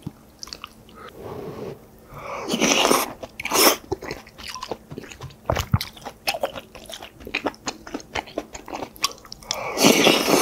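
Close-miked chewing of a mouthful of rice and doenjang stew, with many small wet mouth clicks. There are louder noisy swells about three seconds in and again near the end, as another mouthful is taken.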